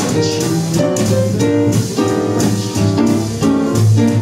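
Small jazz band playing an instrumental passage without vocals: plucked double bass walking underneath, drum kit and piano, with a melody of held notes on top.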